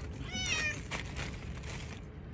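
A stray cat meowing once: a short, high meow about half a second in, dipping slightly in pitch at its end.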